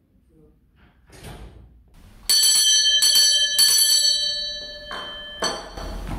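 Brass hand bell with a wooden handle rung about three times, a little over half a second apart, a bright ringing tone that then slowly dies away. Two knocks near the end.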